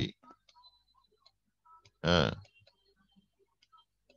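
A man's voice giving one short spoken syllable about two seconds in, amid faint scattered clicks and ticks.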